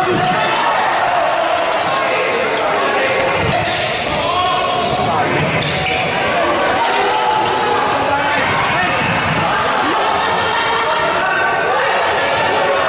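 Futsal match play in an indoor sports hall: sharp thuds of the ball being kicked and bouncing on the wooden court now and then, over a steady din of players' shouts and spectators' voices.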